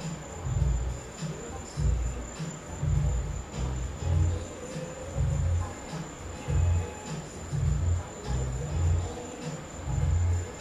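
A cricket trills steadily on one high note. Louder low thumps, coming about once a second, sit underneath it.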